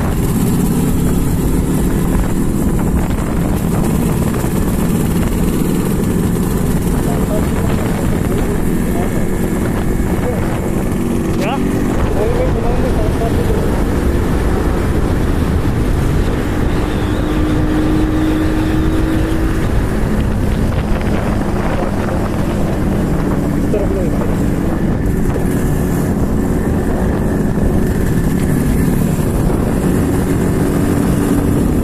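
Yamaha RD350 (Rajdoot RD350 High Torque) air-cooled two-stroke twin running under way, heard from a motorcycle riding alongside and mixed with that bike's own engine and road noise. The exhaust note holds steady, its pitch drifting gently up and down with the throttle.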